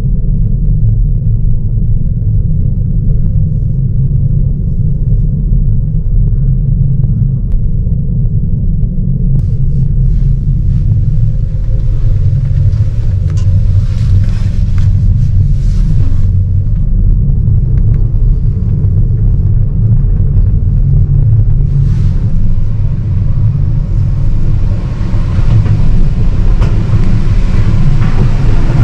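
Steady low rumble inside a moving gondola cabin, with hiss and clatter rising around the middle as the cabin passes a lift tower, and a louder hiss building near the end as it enters the upper terminal.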